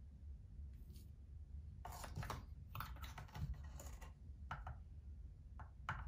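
A metal tablespoon scooping and scraping coarse-ground coffee in an electric coffee grinder's cup, levelling each spoonful: a quiet run of short scrapes and clicks starting about two seconds in.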